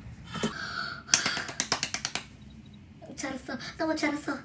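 A woman laughing: a quick run of short breathy bursts, followed by a few excited wordless vocal sounds near the end.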